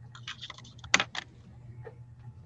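A quick run of light clicks and taps, with one sharper knock about a second in, over a low steady hum.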